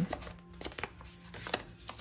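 Paper envelopes and letters being handled and laid on a table: several short soft taps and rustles, over faint background music.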